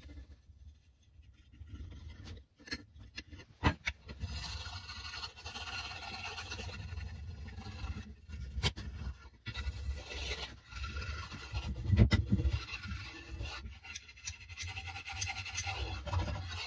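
Rubbing strokes along a wooden axe handle, working wax into the grain, heard as a steady rough scratching that starts a few seconds in. A few sharp knocks of the tool or handle against the bench break in, the loudest about three-quarters of the way through.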